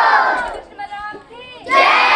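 A large group of girls shouting together in unison, twice: the first shout fades about half a second in and the second starts near the end, with a quieter voice in between.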